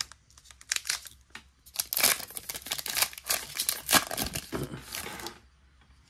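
Wrapper of a trading card pack crinkling and tearing as it is handled and opened, in a run of crisp, irregular rustles that stops about a second before the end.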